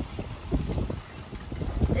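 Wind buffeting a handheld phone's microphone in uneven low gusts.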